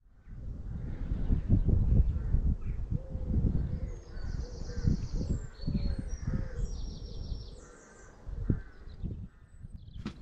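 Birds calling outdoors over wind gusting on the microphone. A run of repeated calls comes in the middle, with short high chirping trills above them.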